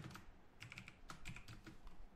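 Faint typing on a computer keyboard: a run of separate, irregularly spaced key clicks.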